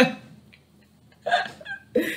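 A woman's short, breathy laugh about a second and a half in, after a brief pause.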